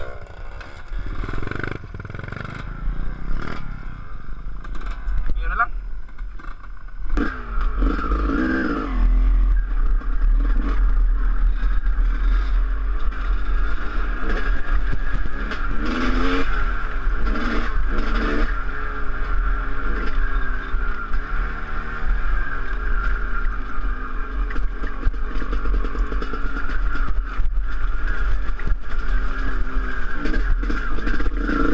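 Dirt bike engine heard from the rider's helmet camera, running and then revving up and down as the bike rides a rough grassy trail, with a heavy low rumble of wind on the microphone. It gets louder about seven seconds in as the bike gets under way.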